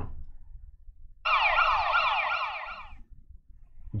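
An electronic siren-like sound effect, a quick series of repeated rising sweeps, starting about a second in and lasting under two seconds.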